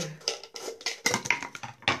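Scissors snipping through a plastic ketchup squeeze bottle and the plastic clicking and crackling as the top comes free, a few sharp clicks with the loudest near the end.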